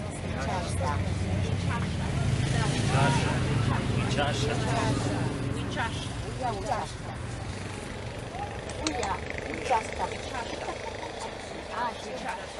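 Indistinct voices, with the low engine drone of a passing motor vehicle that swells to its loudest about three seconds in and fades away by about eight seconds.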